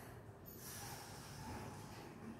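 A person breathing out hard through the nose or mouth during a stretch: a soft rush of breath about half a second in, lasting about a second, over a steady low room hum.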